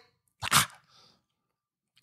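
A single short breath noise from the host about half a second in, with a fainter trace just after; otherwise near silence.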